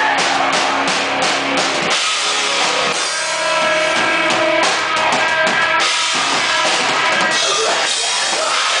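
Rock band playing loud live, heard from just behind the drum kit so the drums and cymbals stand out over the electric guitars. The drumming changes pattern a few times, about two and three seconds in and again near six seconds.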